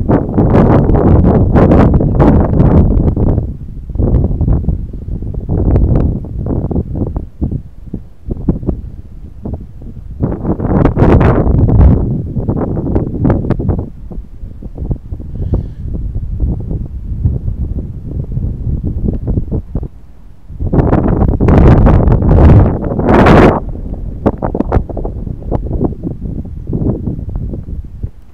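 Wind buffeting the microphone in loud, irregular gusts, strongest around the start, about eleven seconds in, and again a little after twenty seconds.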